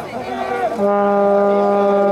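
A single steady horn blast, one low held note, starting about a second in and lasting about two seconds, with spectators' voices around it.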